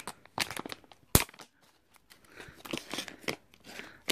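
Plastic packaging of a makeup blending brush being handled and opened: scattered clicks and crinkling, with one sharp click about a second in and softer rustling later.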